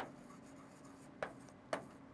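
Stylus writing on a pen-display tablet: faint scratching with two short taps of the pen tip in the second half.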